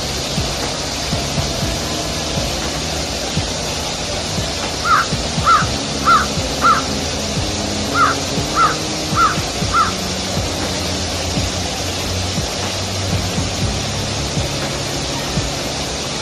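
A bird calls in two runs of four short, evenly spaced calls, about five and eight seconds in. Under them runs the steady rush of a waterfall, with soft background music.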